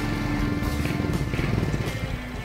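Background music with held tones, over a motorcycle engine running with a rapid low pulsing.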